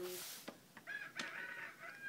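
Electronic farm toy playing a recorded rooster crow through its small speaker: a drawn-out crowing call starting about a second in.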